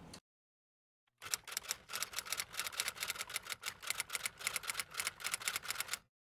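Typewriter-style keystroke sound effect: a fast even run of key clicks, about nine a second, starting about a second in after a moment of dead silence.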